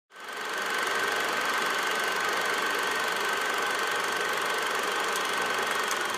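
A small electric motor running steadily at high speed, with a constant high whine over a noisy hum. It fades in at the very start and holds an even level.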